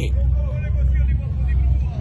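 A steady low rumble, with only faint voice sounds above it.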